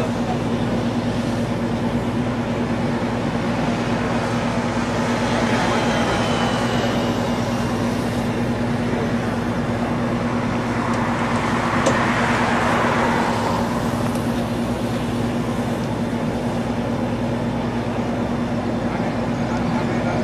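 Steady engine drone with a constant low hum and no clear changes.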